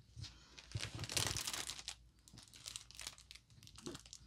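Clear plastic protective film on a diamond painting canvas crinkling as fingers press and handle it, in irregular crackles that are densest about a second in, then a few scattered small crackles.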